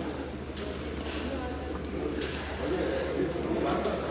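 Ambience of a large indoor fish auction hall: a steady low hum with faint, distant, indistinct voices.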